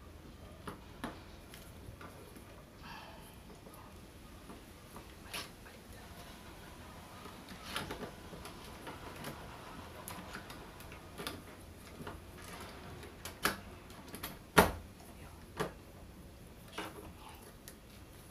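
Irregular metal clicks and knocks of a tubular lever lockset being handled and fitted on a door, with one sharper knock late on.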